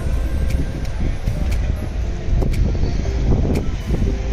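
Strong wind buffeting the phone's microphone: a loud, steady low rumble with scattered crackles.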